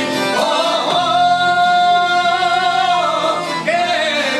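Albanian folk song performed live: men singing over accordion, long-necked plucked lutes and guitar. A sung note is held from about a second in until shortly before the end.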